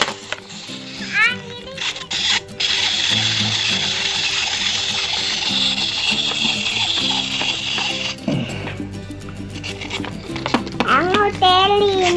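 Small wind-up robot toy's clockwork mechanism whirring for about five seconds as it walks, stopping suddenly, over background music.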